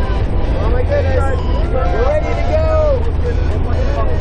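A small aircraft's engine and propeller droning steadily inside the cabin in flight, a constant low rumble, with people's voices raised over it.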